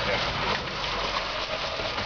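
Suzuki Samurai off-roader crawling up a dirt bank covered in dry leaves, its engine running under a steady rushing, crackling noise of tires churning through leaves and dirt.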